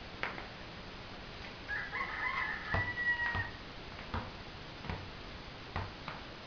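A rooster crows once, starting about two seconds in, ending on a long held note. Several short thumps of a basketball bouncing on a concrete court come at irregular intervals around it.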